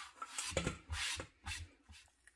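A hand sweeping shredded cabbage scraps across a wooden cutting board: a few brushing, rasping strokes about half a second apart.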